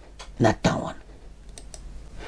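Light clicking and a couple of short fragments of speech, about half a second in.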